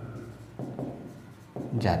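Marker writing on a whiteboard, faint strokes against the board.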